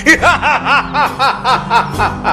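Men laughing together, a rhythmic ha-ha-ha of about five pulses a second.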